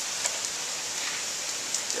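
Steady rain falling outside an open window: a continuous hiss with a few scattered drop ticks.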